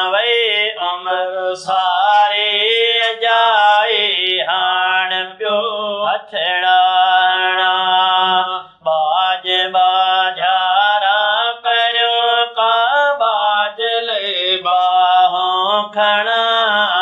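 Two men chanting a naat, an Islamic devotional poem in praise of the Prophet, their voices together in a slow melismatic line with long held notes and a brief breath break about nine seconds in.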